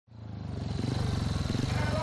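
Speedway motorcycle's single-cylinder engine running steadily with a fast, even firing pulse, fading in from silence over the first second. Faint voices over it.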